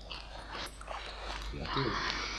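A short whimpering, whining vocal sound with a wavering pitch, starting near the end, over faint room hum.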